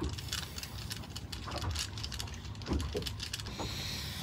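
Irregular light clicks and taps of hand tools and small hardware: a screwdriver working at a stainless steel pump-mounting bracket held in locking pliers, over a low rumble.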